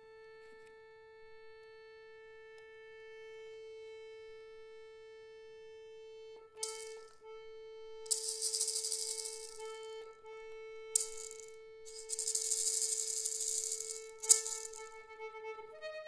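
Accordion holding one long sustained note that swells slightly, with a hand-held rattle shaken in about five short bursts from about six seconds in. The rattle bursts are the loudest sounds. The accordion moves to a higher note just before the end.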